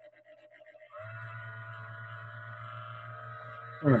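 A steady hum with several high held tones starts suddenly about a second in and holds at an even level.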